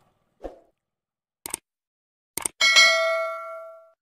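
Subscribe-button animation sound effect: a soft pop, then two sharp mouse clicks about a second apart, then a bright notification-bell ding that rings out and fades.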